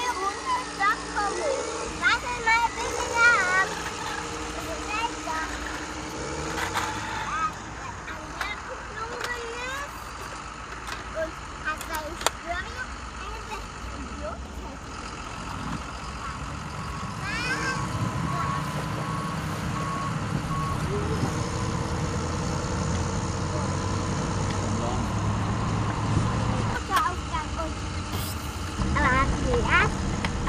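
A child's voice in the first seconds, then a low vehicle engine rumble that builds through the second half and stops shortly before the end. A run of steady reversing beeps sounds around the middle.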